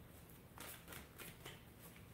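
Faint soft taps and rustles of tarot cards being handled, a few light touches spread through the quiet.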